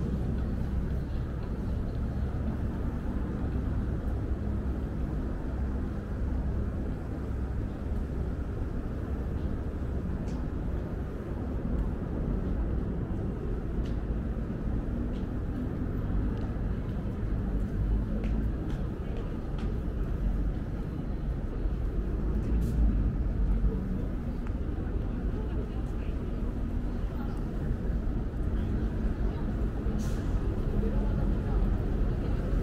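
Busy city street ambience: a steady rumble of traffic with indistinct voices of passers-by.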